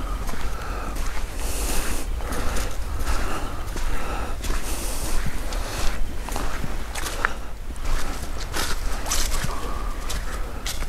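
Footsteps walking through dead leaves and twigs on a forest floor: irregular crunches and rustles with an occasional sharp snap, over a steady low rumble.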